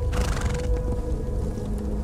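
A Przewalski's horse gives a short, breathy snort in the first half-second or so, over background music of long held notes.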